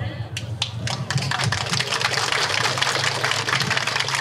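Audience applauding: a dense, even patter of clapping that starts about half a second in.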